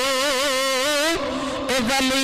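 A man's voice chanting a long held note with a strong, wavering vibrato. The note breaks off a little over a second in for a short breath, and a new held note starts near the end.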